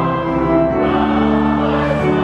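Church organ playing sustained hymn chords with many voices singing along. The deepest bass notes drop away during this stretch.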